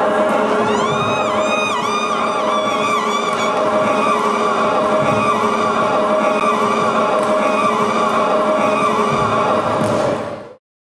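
Voices chanting on steady held notes, with a woman's voice wailing into a microphone. From about one to three and a half seconds in, a run of high swooping notes rises and falls over the chant.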